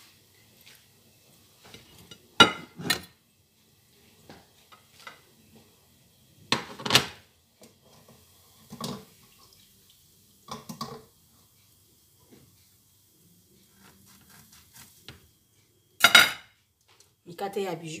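Metal cutlery clinking against ceramic plates: a handful of separate sharp clinks with softer taps between them, the loudest about two and a half, seven and sixteen seconds in.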